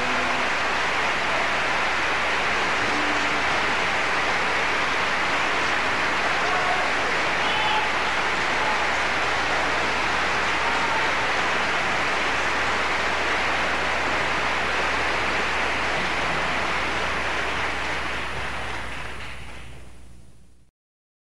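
Audience applauding steadily, fading out over the last few seconds.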